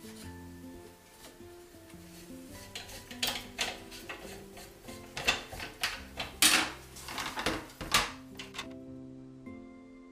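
Background music with held notes, over a run of clatters, knocks and cloth rustles from about three seconds in, loudest around six and a half and eight seconds: a cheese press being released and its mould and follower handled and lifted out.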